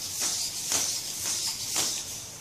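3D-printed hexapod robot turning on the spot: its hobby servos whirring and its plastic feet tapping and shuffling on a concrete floor, with taps about every half second.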